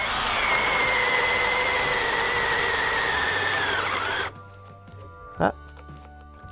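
Makita HP457D 18 V cordless drill boring into wood with a new 18 mm bit: a steady motor whine that sags slightly in pitch under load, then stops abruptly about four seconds in, after the drill has been pushed a bit too hard.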